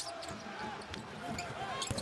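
Basketball game sound on a hardwood court: the ball thudding on the floor a few times, the sharpest thud near the end, over a steady murmur of arena crowd and voices.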